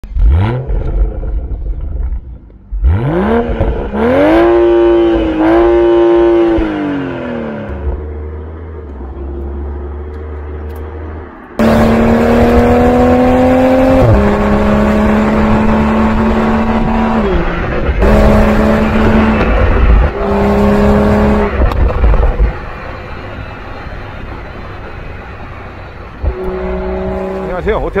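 Toyota GR Supra's 3.0-litre inline-six exhaust, revving and accelerating in several short takes that cut abruptly: the pitch sweeps up and falls back, then holds high under hard acceleration with short drops as it shifts gears, and rises again near the end.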